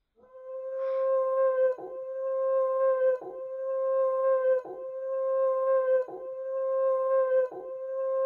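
A schnauzer howling in a run of long, level notes, each about a second and a half long, broken by short catches for breath. Each note grows louder as it is held.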